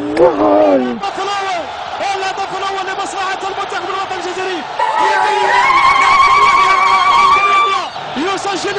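Excited voices shouting in celebration of a goal, ending in one long, wavering high cry held for about three seconds.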